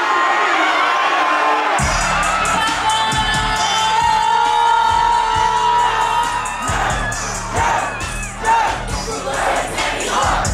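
Concert crowd cheering, then about two seconds in a hip-hop track's heavy bass beat kicks in over the venue's speakers, with the crowd still cheering and singing along over the music.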